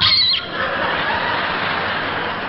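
A brief high-pitched squeal lasting about half a second, followed by a steady din of theatre audience laughter and applause.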